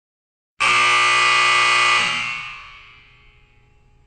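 A loud buzzer sounds once, about half a second in, holding one steady pitch for about a second and a half before fading away over about a second.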